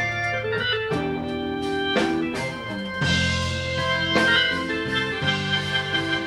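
Electric organ playing held chords that change about once a second, in a blues band's instrumental break.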